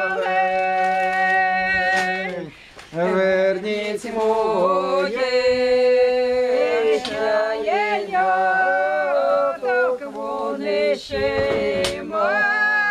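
A small folk ensemble singing a Ukrainian chumak song unaccompanied, several voices holding long notes in harmony. There is a brief break between phrases about two and a half seconds in.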